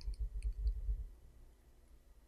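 A few faint, short clicks over a low rumble in the first second, then near silence.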